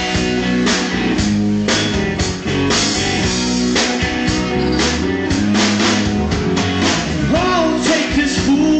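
A live rock band playing: electric guitars, bass, keyboard and a drum kit keeping a steady beat.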